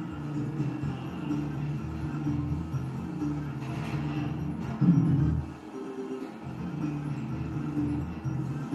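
Electronic game music from a Novoline Book of Ra slot machine during its free spins: a short low melody repeats as the reels spin and stop, one spin every few seconds. A brief louder low sound comes about five seconds in.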